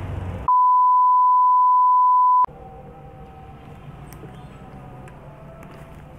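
A steady high-pitched electronic beep of about two seconds, laid over a cut in editing with all other sound muted behind it. A low rumble runs briefly before it, and a quieter steady background hum follows it.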